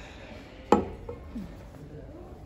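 A single sharp knock about a third of the way in: a drinking glass set down on a wooden tabletop, with a brief ring after it.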